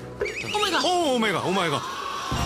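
A horse's whinny, dropped in as a comic sound effect: one long quavering call that falls in pitch over about a second and a half.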